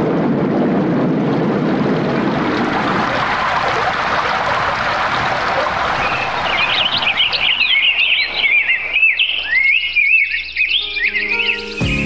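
Radio-drama sound effects: a steady rushing noise that fades away over the first several seconds, then birds chirping and warbling from about six seconds in.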